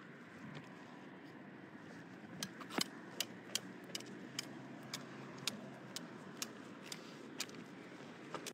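Riding noise from a bicycle on a street: a steady low rumble of tyres and wind. From about two and a half seconds in, a run of sharp clicks comes roughly twice a second.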